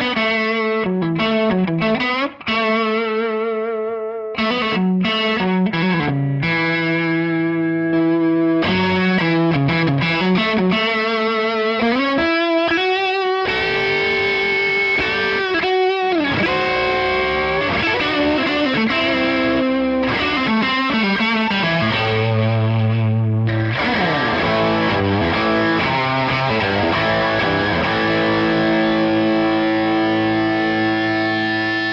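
Electric guitar lead played through a Fender Hot Rod Deluxe III tube combo amp with an overdriven tone: held notes with vibrato, string bends and slides, and a low held note a little past the middle.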